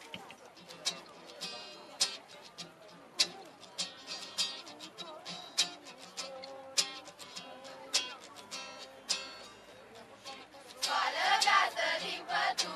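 Acoustic guitar strumming chords in a steady rhythm as the introduction to a Romanian Christmas carol. A children's choir starts singing about eleven seconds in.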